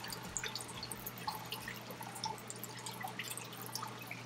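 Faint dripping and trickling of water in a small aquarium grow-out tank fed by a drip system, with many small irregular drips over a steady low hum.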